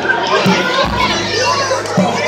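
Crowd of children and adults chattering and calling out over loud music with a bass line.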